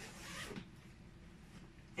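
A suitcase's inner compartment being unfastened and pulled open: one short rasping rub of fabric, about half a second long, at the start.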